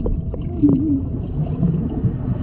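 Swimming-pool water heard from underwater: a muffled low rumble with scattered small clicks and bubbling. Just over half a second in, a short wavering hum rises and falls.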